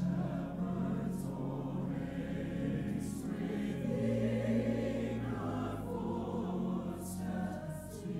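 A mixed church choir of men's and women's voices singing an anthem in long, sustained phrases, with sung 's' consonants cutting in briefly every second or two.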